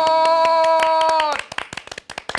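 Several people clapping hands fast, under a man's long held shout of "sut yot!" ("awesome!"). The shout breaks off about one and a half seconds in, and the clapping goes on.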